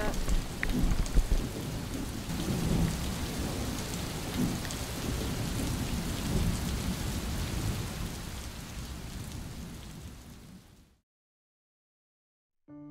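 Steady rain with a heavy, uneven low rumble of wind and storm, scattered with small drop ticks, fading out near the end.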